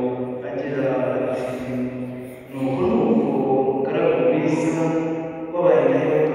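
Church singing: a group of voices chanting a liturgical melody in long held phrases. There is a brief dip about two and a half seconds in, and a louder phrase starts near the end.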